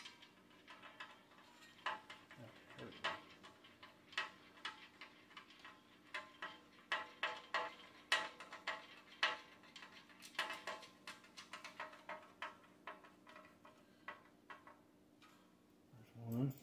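Irregular light metallic clicks and taps of bolts and washers being handled and fitted by hand into a steel TV-mount bracket. A faint steady hum runs underneath.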